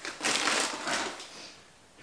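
Crinkling of a small clear plastic bag of timothy hay being picked up and handled, the dry hay rustling inside; it dies away after about a second and a half.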